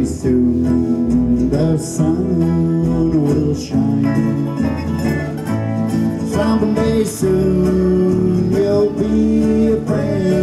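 Live country band playing an old-time country song in an instrumental passage, guitar to the fore with a lead instrument's held and sliding notes over it.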